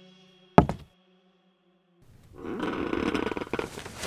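A single heavy thud, like a knock, then a second of silence, then a rough growl-like horror sound effect lasting about a second and a half. The thud is the loudest sound.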